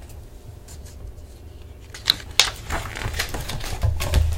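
Page of a hardcover picture book being turned: a short run of paper rustles and flicks starting about halfway through.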